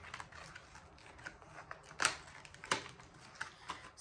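A small paperboard box being opened by hand and the foil pouches inside handled: faint rustling and scraping with a few sharp clicks, the loudest about two seconds in.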